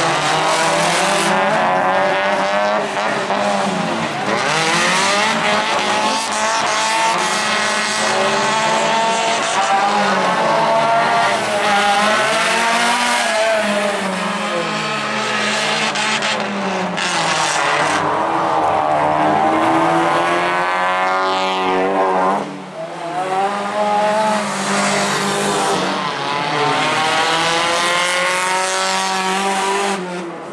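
Several autocross race cars with their engines revving hard and overlapping. Each engine note climbs and then drops back at the gear changes or when the driver lifts off.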